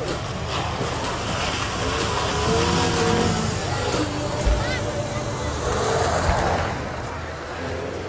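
Renault Twingo RS's four-cylinder petrol engine revving hard as the car is thrown through a cone slalom, its pitch rising and falling with the throttle, fading near the end as the car pulls away.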